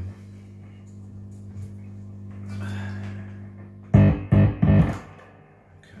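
Electric guitar amplifier humming steadily while the guitar is being changed, with a swell of noise about halfway through. About four to five seconds in come three loud, short thumps through the amp, handling noise from the guitar and its cable.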